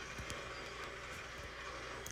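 Quiet room background: a low steady hum with a few faint soft ticks.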